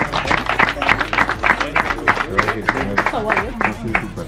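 Applause from a few people, a quick even run of hand claps at about five a second, over background music.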